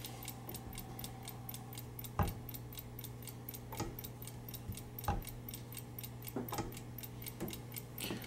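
The clock movement of a Sargent & Greenleaf Model #4 time lock ticking fast and evenly, about five ticks a second. A few louder, irregular metal clicks and knocks come from a hand handling the combination lock and boltwork, the loudest about two seconds in.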